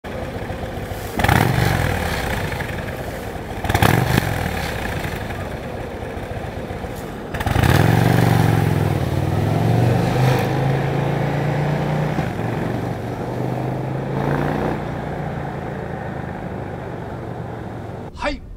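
Harley-Davidson Breakout 117's 1923 cc Milwaukee-Eight 117 V-twin idling and revved in two short blips, about a second in and again just under four seconds in. About seven seconds in it pulls away, the engine note rising and dipping as the bike accelerates, then slowly growing quieter as it moves off.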